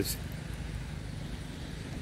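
Low, steady outdoor background rumble with no clear single event.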